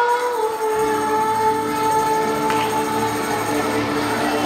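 Large children's choir holding one long sung note, with acoustic guitar accompaniment coming in underneath about a second in.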